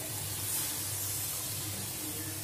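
Tamarind water poured into a hot kadai of fried vegetables, hissing and sizzling as it hits the pan, loudest about half a second in and then going on as a steady hiss.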